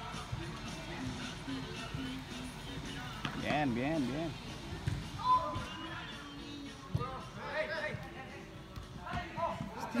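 Background music playing through an indoor soccer hall, with players' distant shouts and a ball being kicked or hitting the boards, one sharp thud about seven seconds in.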